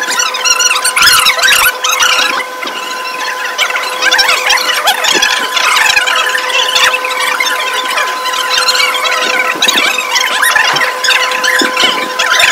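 Thin plastic bags crinkling and squeaking continuously as many hands open and fill them with food, over a steady high-pitched whine.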